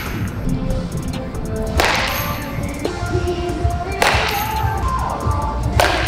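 A baseball bat hitting balls off a batting tee: three sharp cracks about two seconds apart, each followed by a short swish. Background music plays throughout.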